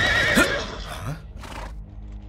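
Horses neighing: a whinny with gliding pitch in the first half second, then a couple of short noisy sounds as the music drops away.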